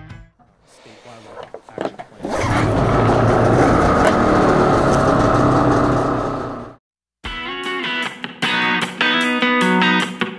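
A snowmobile engine running steadily for about four and a half seconds, then cut off abruptly. After a brief gap, electric guitar background music starts.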